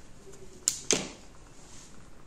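Two sharp clicks about a quarter second apart, the second with a short duller knock, as a cardboard eyeshadow palette is picked up and handled.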